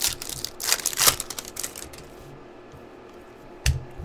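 A trading-card pack wrapper being torn open and the cards handled: a quick run of crackling and clicking in the first two seconds, then quieter, with a soft thump near the end.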